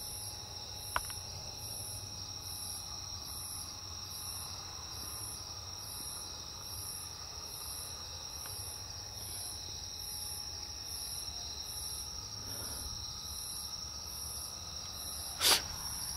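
Crickets chirping in a steady rhythm, a high pulse a little more than once a second over a steady high hum. There is a faint click about a second in and a brief louder noise near the end.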